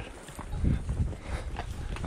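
Hooves of a walking horse on a dirt and stone trail: a few irregular thuds and scuffs.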